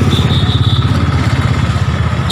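An engine running with a fast, even low throb.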